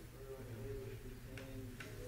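Faint murmuring voices over a steady low hum, with two light clicks about one and a half seconds in.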